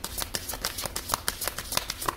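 A deck of large divination cards being hand-shuffled: a quick, continuous run of soft card clicks and slaps as the cards slide over one another.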